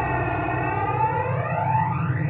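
Siren-like synthesizer sweep in a funk capixaba beat, its pitch gliding down and then back up, over a steady high tone and low bass.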